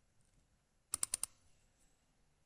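Computer mouse button double-clicked, a quick cluster of sharp clicks about a second in.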